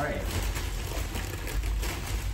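Plastic bag of ice cubes crinkling and rustling as it is pulled open by hand, over a steady low rumble.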